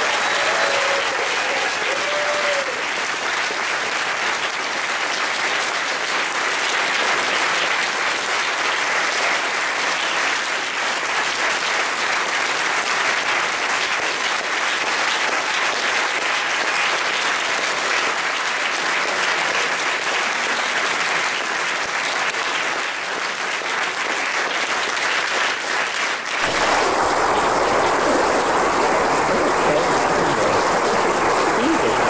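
Audience applauding steadily. A little before the end the sound changes abruptly to a fuller, deeper wash of noise.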